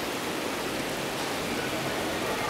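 Steady rushing hiss of a grid of fountain jets spraying up and splashing back down onto the wet surface.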